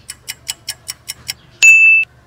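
Edited-in clock-ticking sound effect, seven quick ticks at about five a second, followed by a single loud, bright ding that cuts off abruptly: a 'thinking, then got it' cue.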